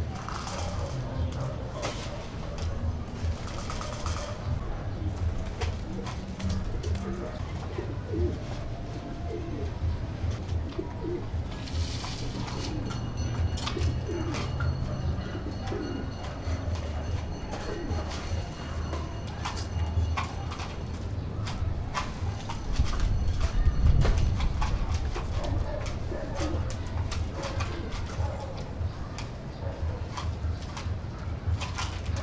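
Domestic pigeons cooing in their loft cages, with scattered clicks and knocks from the cages and feeders being handled. A louder low rumble comes about three-quarters of the way through.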